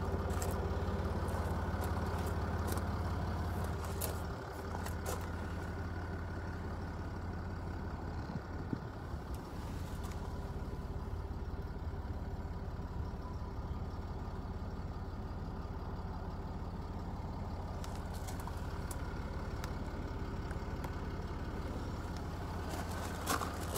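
Jaguar XF's 3.0-litre V6 turbodiesel idling steadily with a low, even hum. A few light clicks come near the start and again near the end.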